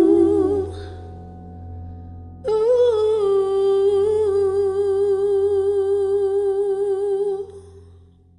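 A woman's voice singing a long wordless note with vibrato, held from about two and a half seconds in until near the end. An earlier held note fades out within the first second.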